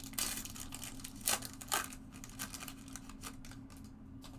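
Foil trading-card pack wrapper being torn open and crinkled by hand, with a few sharper rips in the first two seconds, then quieter rustling.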